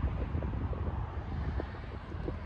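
Lifted Chevrolet Silverado pickup rolling slowly across a parking lot with its engine running, a steady low rumble mixed with wind on the microphone.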